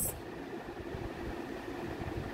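Steady background hum: an even noise with a faint held low tone, no distinct strokes or clicks.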